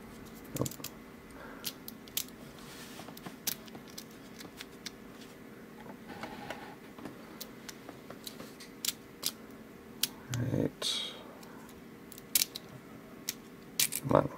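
Scattered small metallic clicks and taps from a brass mortise lock cylinder and its key being handled and turned while the plug is worked out of the housing. A brief low vocal sound comes about ten seconds in.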